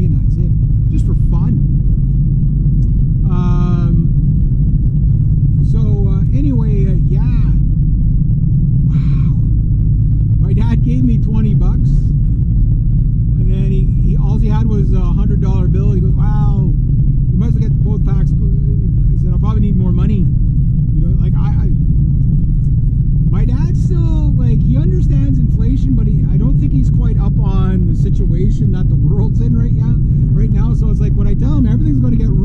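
Steady road and engine rumble inside the cabin of a moving Honda car, with a man's voice talking on and off over it.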